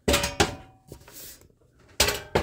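Kitchen handling noises: a clatter at the start with a sharp knock about half a second in, a brief steady tone, and another clatter and knock at the end.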